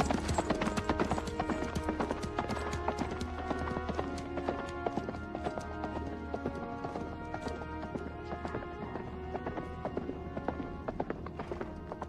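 Horse hooves clip-clopping on hard ground, many quick hoof strikes, over an orchestral film score; the hoofbeats slowly fade away toward the end.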